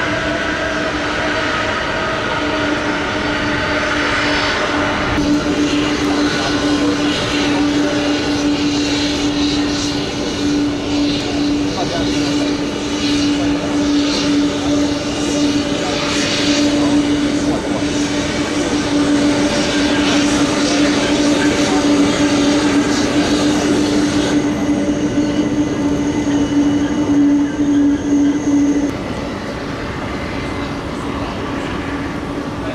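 Jet engines of a Boeing 747 freighter taxiing at idle thrust: a loud, steady engine noise with a constant hum.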